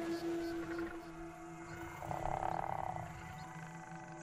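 Dark, sustained documentary score: low notes held steadily, with a higher tone swelling briefly about two seconds in.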